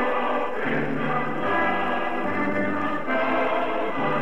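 A choir singing with instrumental accompaniment, in long held chords that change every second or so.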